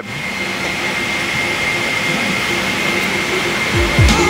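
Steady roar of an airliner cabin in flight, jet engines and air circulation, with a thin high whine running through it.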